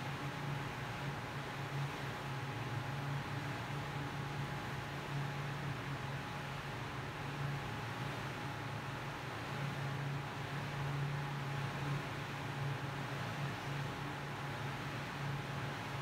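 Steady hiss of background noise with a low hum and a faint, thin, steady whine, unchanging and with no distinct events.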